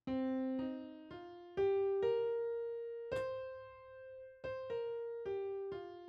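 C blues scale played one note at a time on the FL Keys piano plugin in FL Studio, about ten notes climbing to the octave C and coming back down. Each note starts sharply and rings as it fades.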